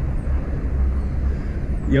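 Steady low rumble of motorway traffic and wind buffeting the microphone of a camera riding along with a moving bicycle.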